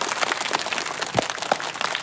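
A group of people clapping their hands in steady applause.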